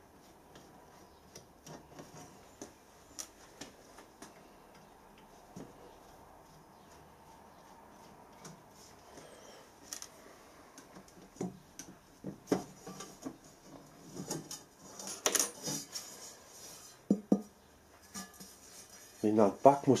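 Light metallic clinks and clatters of a screwdriver and small screws as the back cover of a solid bronze pressure gauge is unscrewed and lifted off, faint at first and louder and busier in the second half, with one brief scraping sound.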